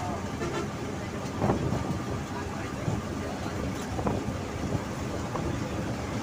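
Steady road and engine rumble from inside a moving vehicle at highway speed, with wind noise and a few brief louder moments.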